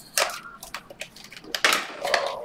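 Hands sliding open a small cardboard card-pack box: a few light clicks and scrapes of card stock, then a louder scraping rustle near the end.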